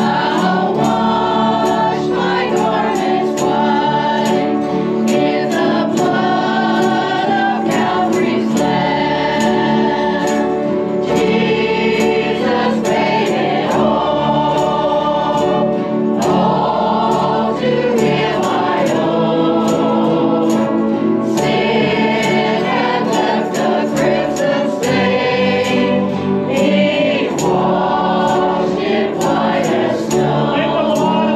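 A small church choir, mostly women's voices, singing a song together into microphones in phrases a few seconds long, over steady accompaniment with a light ticking beat about twice a second.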